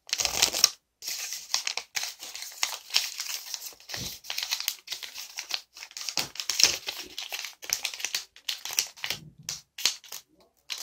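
Origami paper rustling and crinkling as it is folded and creased by hand, in quick irregular bursts with a few brief pauses.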